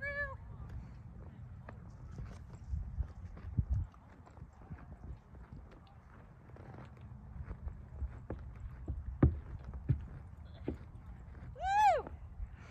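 Gaited horse walking on grass, its hooves giving scattered soft thuds over a low outdoor rumble, with a short voice sound near the end.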